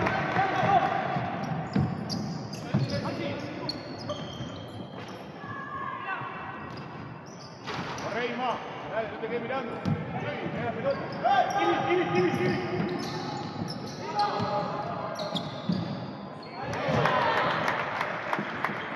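A basketball being dribbled on a wooden indoor court, with sneakers squeaking and players shouting, all echoing in a large gym. The voices grow louder near the end.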